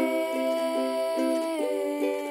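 A woman singing one long held note, with no words, over a ukulele strummed in a steady rhythm; the held note fades about three-quarters of the way through.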